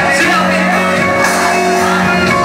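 A live band playing an instrumental passage, loud and reverberant in a large hall, with shouts from the crowd over it.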